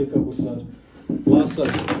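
Speech: a man and a woman in a heated exchange, with a voice rising loudly about a second and a half in.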